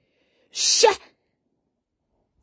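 A single short hissing burst from a person's voice about half a second in, ending in a brief voiced sound.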